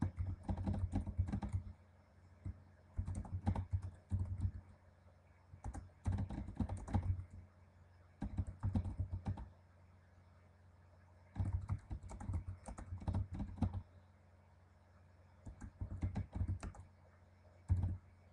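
Typing on a computer keyboard: rapid keystrokes in short runs of a second or two, with brief pauses between the runs.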